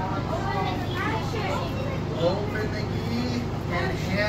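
Children's voices calling out overlapping answers, over a steady low hum.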